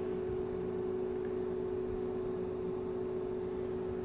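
Steady room hum: one constant mid-pitched tone with fainter lower tones over a light hiss.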